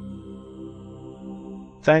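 Ambient new-age background music of sustained, steady droning tones.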